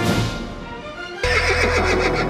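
A brass-led music chord dies away, then a little over a second in a horse whinny sound effect cuts in suddenly over new music, as part of a logo sting.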